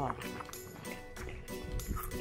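A French bulldog chewing raw daikon radish: crisp, wet crunches about four or five a second. The radish is fresh and firm, which the owners call crunchy. Background music plays underneath.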